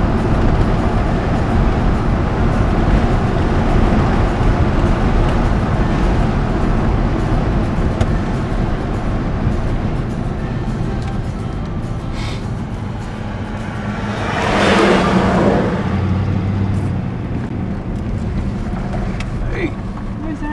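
Car cabin noise while driving on a highway: steady engine and tyre noise, with a louder whoosh about fifteen seconds in as an oncoming vehicle passes. The noise eases off near the end as the car slows.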